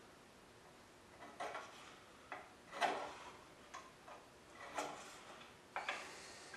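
A height-gauge scriber scratching layout lines across blued steel parts: about six short scrapes and clicks, the loudest near the middle, laid out in pencil-fast strokes with small metal knocks as the parts and gauge are shifted.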